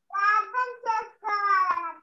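A child singing, three short phrases of held, steady notes.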